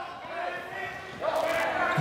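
A basketball being dribbled on a gym floor, under faint shouting voices.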